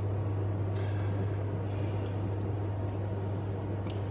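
Wooden spatula stirring flaked salt cod in simmering milky liquid in a frying pan: soft wet sloshing over a steady low hum.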